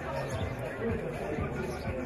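Indistinct voices of spectators and players talking over one another across the pitch, with repeated low thumps.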